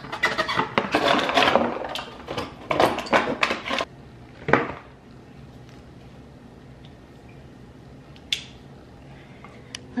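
Cardboard box of an LED tree topper being opened and handled, with rustling and scraping for about four seconds and a sharp knock soon after, then quiet room tone with one faint click.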